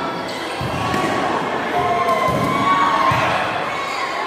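A volleyball being struck a few times during a rally, short dull thuds of hand on ball in a large gym hall, under steady crowd noise and shouting voices.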